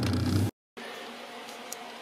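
Steady low engine hum heard inside a 1983 VW Rabbit GTI's cabin, cutting off abruptly about half a second in. After it comes quiet room tone.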